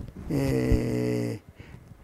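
A man's drawn-out hesitation sound, a steady low-pitched "ehh" held on one note for about a second, then stopping abruptly.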